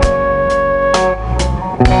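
A live band playing: electric guitars and a drum kit, with a lead melody of long held notes on top and drum hits about every half second.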